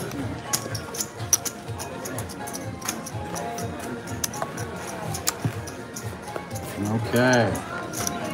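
Casino chips clicking and cards being handled on a felt table as the dealer settles the bets: many short sharp clicks at uneven intervals, over background music and room chatter. A voice comes in briefly near the end.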